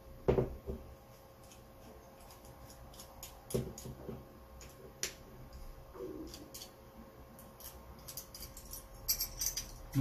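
Light metal clicks and taps from a small screwdriver working a screw in an aluminium RC skid plate. There is a louder knock just after the start and a quicker run of clicks near the end.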